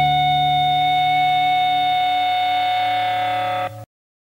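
The final held chord of a rock band's song: distorted electric guitars sustaining one steady chord that slowly thins out and then cuts off abruptly near the end.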